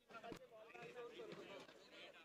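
Faint, distant chatter of people talking, barely above silence.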